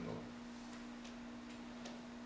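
Quiet room tone with a steady low hum and a few faint, irregular ticks.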